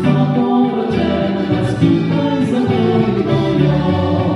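Live Slovenian folk ensemble playing: a woman and a man singing together in harmony over accordion, guitar and double bass, in a steady rhythm.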